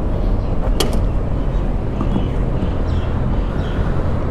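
Steady low outdoor rumble, with a single sharp click about a second in and faint handling noises as things are pulled out of a motorcycle's under-seat storage compartment.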